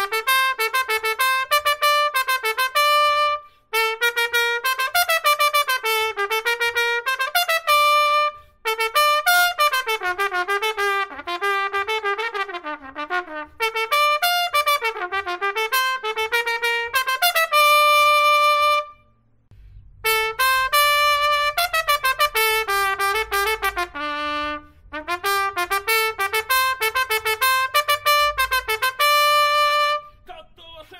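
Solo trumpet playing a Japanese pro baseball cheer-song melody: quick, separately tongued notes in short repeated phrases, several ending on a held high note. There are brief breath pauses between phrases and a longer pause about two-thirds of the way through.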